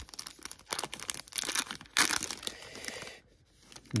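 Foil trading-card pack being torn open and crinkled in the hands, a crackly tearing with its sharpest, loudest rip about two seconds in.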